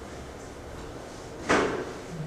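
A single sharp knock about one and a half seconds in, much louder than the room around it, dying away within a fraction of a second.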